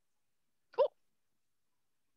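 One short voice sound falling in pitch, lasting under a fifth of a second, a little under a second in; the rest is dead silence.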